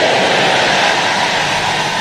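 A large church congregation shouting back in response to the preacher's pronounced blessing: a loud, steady crowd roar that slowly eases off.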